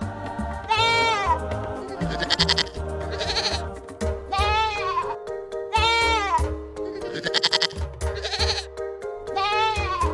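Goats bleating, about eight calls in turn, each bleat rising and falling in pitch, over background music.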